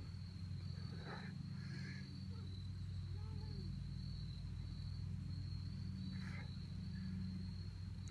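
Steady, unbroken high-pitched insect chorus over a low steady hum, fairly quiet.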